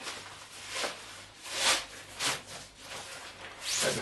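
Backpack fabric and stuff sacks rustling in several short swishes as items are handled and pushed into the top of an MLD Exodus pack.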